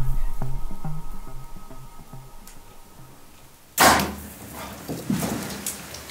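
Background music with a beat fades out, then a single sudden sharp crack about two-thirds of the way in as a Hoyt RX-3 compound bow is shot at a springbok. Scattered thuds and scuffs follow as the springbok herd bolts.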